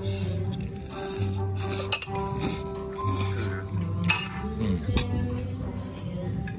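Metal cutlery clinking against a ceramic plate a few times, over background music.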